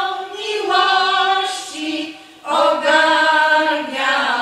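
Women's folk choir singing unaccompanied, holding long notes in harmony, with a brief break for breath a little past two seconds in before the next phrase.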